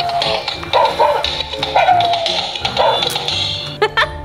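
Battery-powered toy pug giving short, high electronic yips, about one a second and each falling in pitch, over background music.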